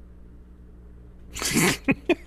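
A man's short, explosive burst of laughter about a second and a half in, after a quiet stretch with a low steady hum.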